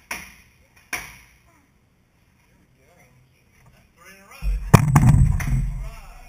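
Two compound bows shot about a second apart, each release a sharp snap of the string that fades quickly. Later comes a louder, low rumble with knocks, and voices over it.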